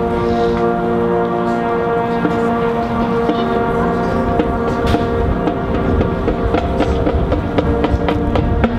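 Marching band playing, with the brass holding sustained chords that change a couple of times. Drum strikes come in about halfway and grow more frequent toward the end.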